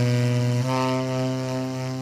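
Solo tenor saxophone playing a slow improvised ballad in its low register: one long held note that moves to another sustained low note a little over half a second in, slowly fading.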